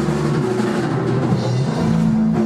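Rock band jamming in a rehearsal room: drum kit prominent over held low notes from the amplified instruments, loud and continuous.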